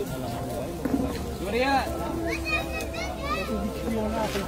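A group of people talking and calling out to each other, with children's voices among them.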